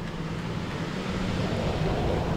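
A car on the street drawing closer, its engine and tyres getting steadily louder.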